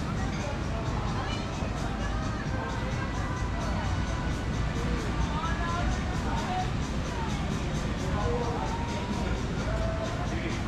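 Background music and faint distant voices over a steady low rumble.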